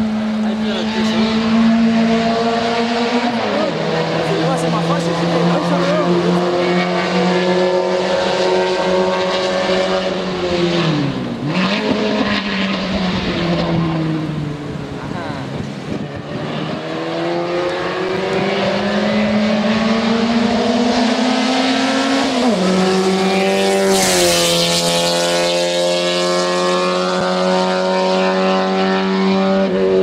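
Fiat 600-bodied race car's small engine on a flying lap. Its pitch climbs steadily and falls back sharply at each gear change or lift, about six times. A louder, brighter rush comes about four-fifths of the way through.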